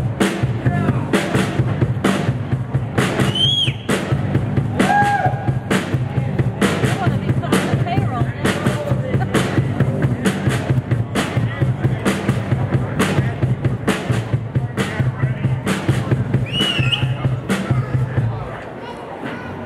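A live amplified rock band plays a song, with the drum kit keeping a steady beat over a bass line and pitch bends from guitar or voice. The music stops right at the end.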